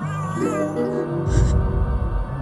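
Horror-film soundtrack music: a wavering high tone at the start over stepped held notes, then a loud deep rumble from about halfway through.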